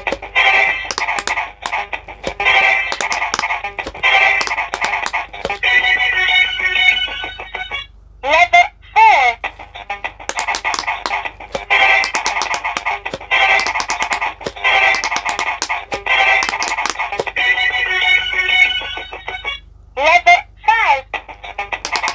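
Electronic quick-push pop-it game playing a looping tune through its small speaker, with sharp clicks as its light-up silicone buttons are pressed. Twice the tune breaks off for a short sweeping jingle as the game moves to its next level.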